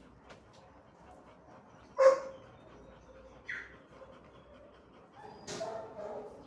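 A dog barking in a kennel: one sharp, loud bark about two seconds in, a short high yip about a second and a half later, and a longer, drawn-out bark near the end.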